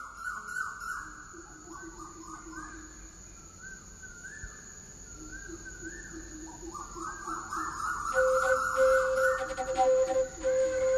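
Birds calling over and over in short rising and falling notes over a steady high insect drone. About eight seconds in, a louder steady held whistle-like tone joins them.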